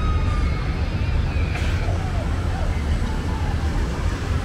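Night street ambience in a busy shopping lane: a steady low rumble with faint voices of passers-by, and a brief rush of noise about one and a half seconds in.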